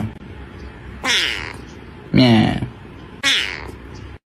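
A cat giving three short meows, about a second apart, each lasting roughly half a second.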